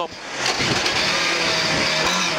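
Lada 2107 rally car's engine driven hard, heard from inside the cabin, with road noise. It dips briefly at the start, then climbs back and runs steady at high revs.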